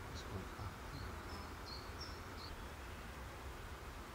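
Steady low hum and faint hiss, with a quick run of about half a dozen short high-pitched chirps in the first two and a half seconds.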